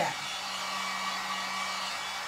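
Electric heat gun running steadily, its fan blowing hot air with a steady rushing hiss and a low hum, drying fresh paint on a painted wooden cutout.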